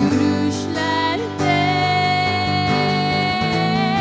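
Steel-string acoustic guitar strummed in steady chords. Over it a voice holds one long wordless note with a slight waver, starting about a second and a half in.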